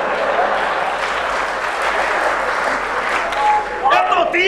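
Live theatre audience applauding, a steady, even clapping that fills the pause in the dialogue.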